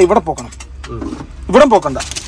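A man's voice in short bursts of speech, a brief utterance at the start and another about one and a half seconds in, over a faint steady low hum.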